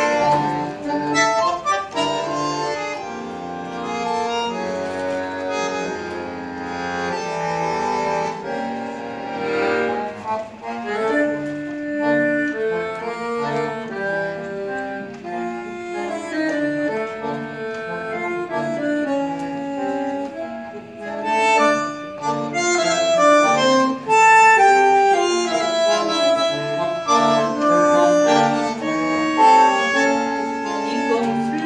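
Live tango ensemble playing an instrumental passage, a bandoneon-type bellows instrument carrying the melody in quick, clipped notes, growing louder in the last third.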